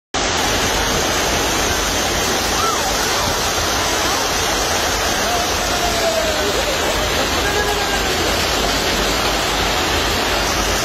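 Heavy rain mixed with hail pouring down onto a wet paved platform: a loud, dense, unbroken hiss that starts abruptly just after the opening, with faint voices behind it.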